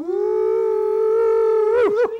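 A voice letting out one long, held, high exclamation of excitement at the mention of sausage gravy, the pitch steady and then flipping up and dropping away at the end.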